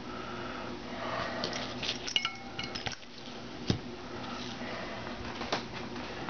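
Light metallic clinks and clicks of small steel engine parts being handled while a snap ring is fitted onto a shaft, with brief metallic ringing a couple of seconds in and sharper single clicks about midway and near the end.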